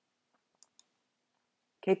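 Two faint computer mouse clicks, about a fifth of a second apart, against near silence.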